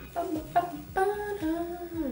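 A woman humming a short tune with her lips closed, a few held notes one after another.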